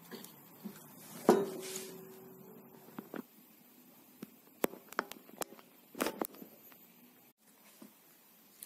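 Handling noise on an electric guitar with slack strings: a sharp knock about a second in, followed by a steady ringing tone for about a second and a half, then scattered light clicks and taps.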